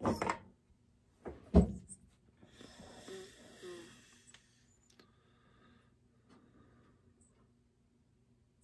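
Chainsaw cylinder being lifted off its crankcase and handled: a knock at the start and a louder clunk about a second and a half in, then a couple of seconds of metal scraping and rustling, with a few faint clicks after.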